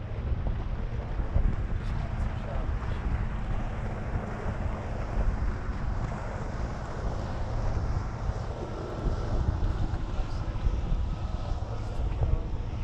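Wind buffeting the microphone in a steady, fluttering rumble, over the wash of open water around a small boat.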